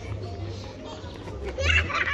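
Children's voices in the open air, with a louder, high-pitched burst of a child's voice near the end, over a steady low hum.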